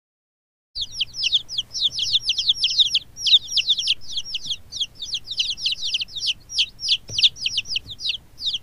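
Baby chicks peeping: a rapid, unbroken stream of high-pitched cheeps, each sliding down in pitch, starting just under a second in.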